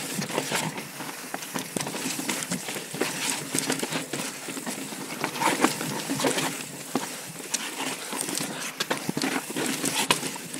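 Yeti SB4.5 full-suspension mountain bike rolling fast down a rocky trail: tyres crunching over rock and loose dirt, with irregular knocks and rattles from the bike as it drops over ledges and stones.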